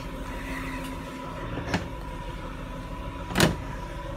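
Steady hum of a body-shop workshop with faint steady tones. Two knocks cut through it, a light one a little before halfway and a louder one near the end.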